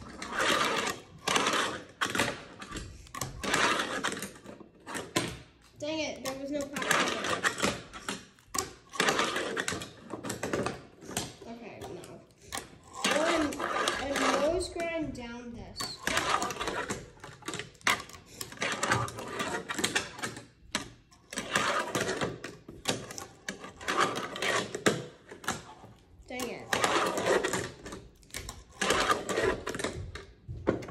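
Fingerboard's wheels rolling and its deck clacking and scraping on a wooden fingerboard ramp, in stop-start runs of rattling clicks. A child's voice is heard briefly now and then.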